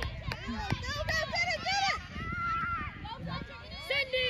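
Children's voices shouting and calling out over one another, high-pitched and overlapping, with no clear words.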